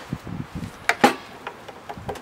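Heavy metal parts of a Gravely tractor's high-low planetary assembly being handled and set down: light clinks and scrapes, with two sharp knocks about a second in.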